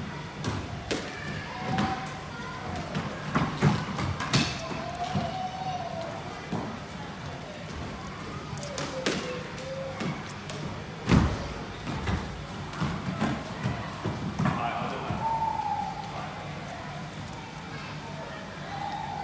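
Squash rally: a squash ball hit by rackets and striking the walls and wooden floor of a squash court in a series of sharp, irregular knocks, the loudest about eleven seconds in.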